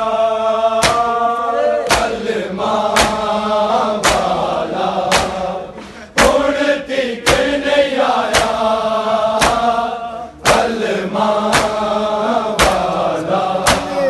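A crowd of men chanting a Shia nauha (mourning lament) together, with loud open-hand chest-beating (matam) slaps landing in time, about one a second. The chant breaks off briefly twice between lines.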